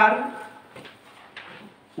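A man's voice ending a spoken word in a small room, then a short pause with faint room noise and a couple of small clicks.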